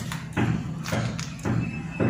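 A run of dull thumps, about two a second, over a low steady hum.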